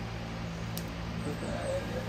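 Quiet workshop background: a steady low hum, with a faint click about a second in and a faint murmured word near the end.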